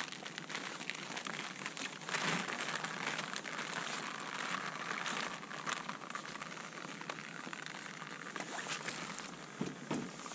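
Water splashing and trickling over a wet ballistics gel block, a steady hiss for several seconds, with a couple of knocks near the end as a plastic jug is set on the table.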